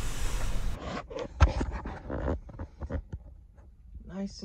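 Sleeping bag and bedding rustling and scraping as they are handled, with a few sharp clicks, the loudest about a second and a half in. A steady hiss in the first moment cuts off abruptly.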